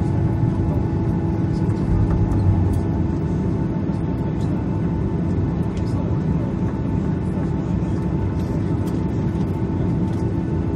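Cabin noise inside a Boeing 737-800 taxiing after landing: the CFM56 engines at idle give a steady low rumble with a steady hum over it, and faint light ticks now and then.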